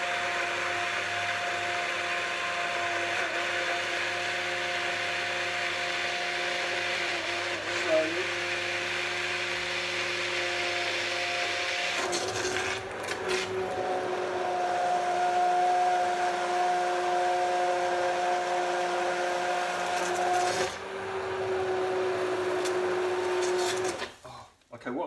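Handheld immersion (stick) blender running in a saucepan, puréeing hot pea and courgette soup: a steady motor whine whose pitch and loudness step up a little about halfway through, stopping right at the end.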